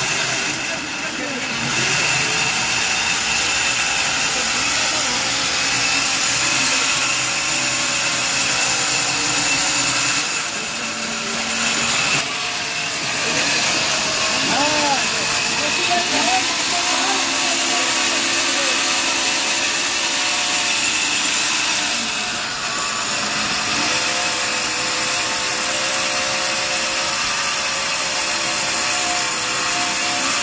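Large sawmill band saw running steadily with a high whine, its blade working through a mahogany log, with workers' voices faintly mixed in around the middle.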